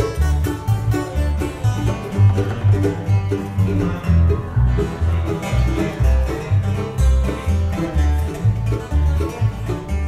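Acoustic bluegrass string band playing a lively tune: banjo and guitar picking over a steady bass line of low notes about twice a second.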